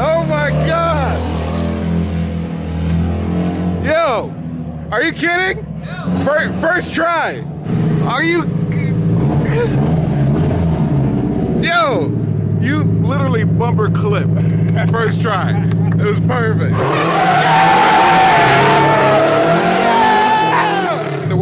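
Nissan S13 drift car engines revving in repeated rising and falling sweeps over a steady engine drone. Near the end the tyres squeal loudly as a car slides through a drift.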